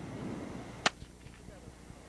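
A single sharp crack from a small pistol, about a second in, fired to test a working dog for gun-shyness.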